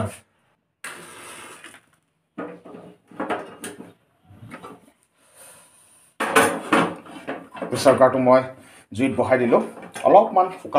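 A man's voice speaking in short phrases, broken by gaps of dead silence.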